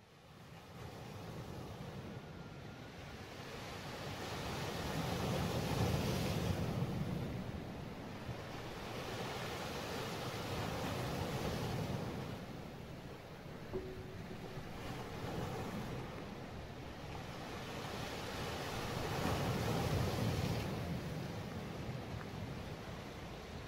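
Sea surf breaking on rocks, fading in at the start and then swelling and ebbing in slow surges every several seconds.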